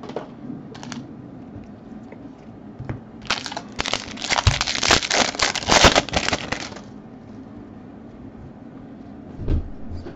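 Foil trading-card pack wrapper crinkling and crackling as it is pulled open by hand, a dense burst of about three and a half seconds starting around three seconds in. A few light clicks come before it and a soft thump near the end.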